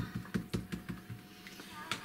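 A quick run of light taps and clicks from hands handling small clear plastic crafting items, such as rubber-stamp sheets and an acrylic block, thinning out after about a second.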